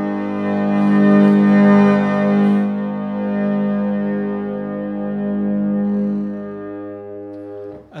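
A c.1868 French harmonium, attributed to Christophe & Étienne, sounding a held chord on its free reeds with the expression stop drawn, so its loudness follows the player's pumping of the foot pedals. The chord swells to its loudest about two seconds in, then slowly dies away and stops just before the end.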